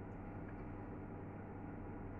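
A steady low background hum with faint hiss and no distinct sound events.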